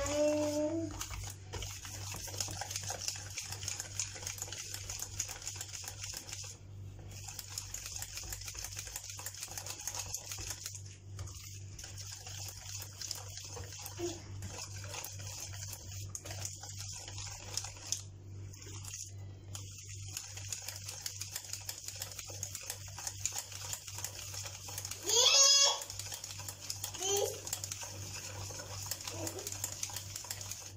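Wire hand whisk beating thick cake batter in a bowl: a steady, rapid ticking and scraping of the wires through the batter and against the bowl, over a constant low hum. A short voice cuts in near the end.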